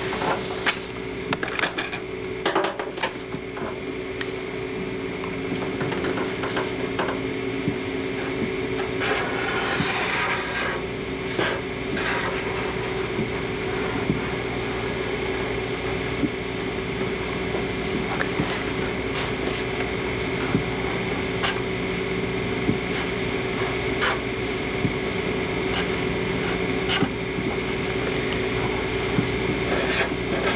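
Pen scratching and rubbing on a sheet of paper on a wooden tabletop as a map is drawn, with scattered light knocks and a longer scratchy stretch about ten seconds in. A steady hum runs underneath throughout.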